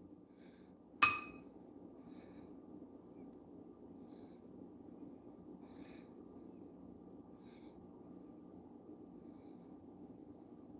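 A metal spoon clinks once against a glass bowl about a second in, ringing briefly. After that there is only a faint, steady low hum.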